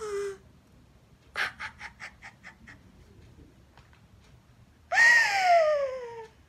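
A woman's theatrical, manic laughter: a run of quick breathy laughs about a second and a half in that fade away, then near the end a loud, long, high-pitched cry that slides down in pitch.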